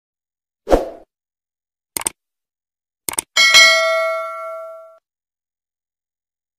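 Sound effects of an animated subscribe-button reminder. A short thump is followed by a quick double click about two seconds in and a couple more clicks about a second later. Then a bright bell-like notification ding rings out and fades over about a second and a half.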